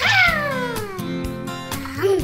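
Light background music with guitar, over which a single high, pitched cartoon sound glides steadily downward for about a second and a half.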